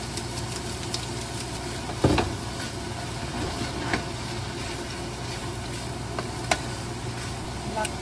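Ground beef and vegetables sizzling in a nonstick frying pan while a wooden spatula stirs them, with a few knocks of the spatula on the pan, the loudest about two seconds in. A steady low hum runs underneath.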